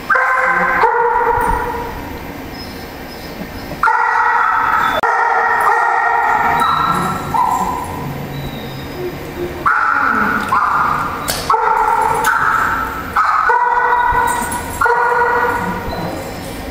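A dog vocalizing in a string of drawn-out, howl-like yips and whines, several calls of a second or so each, coming in clusters with short gaps.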